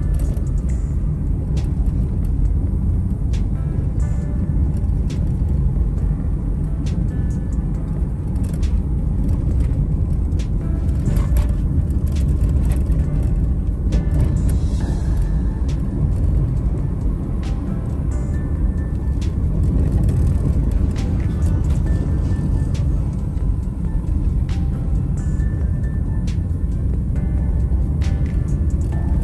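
Steady low rumble of a car driving, heard from inside the cabin, with music playing over it and scattered short clicks.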